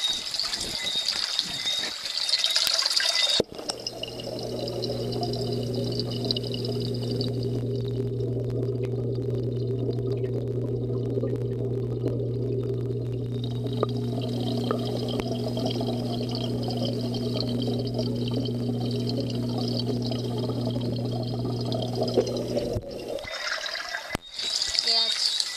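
Rustling and splashing as a waterproof camera is plunged into a fish tank. About three and a half seconds in, the sound changes abruptly to the muffled underwater sound of the aquarium: a steady low hum with a water hiss over it, which stops suddenly as the camera is lifted out near the end.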